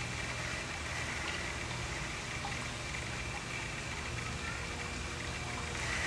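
Pool waterfalls running: a steady sound of falling, splashing water.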